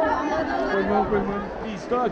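A large crowd of people talking and calling out at once, many voices overlapping into a babble.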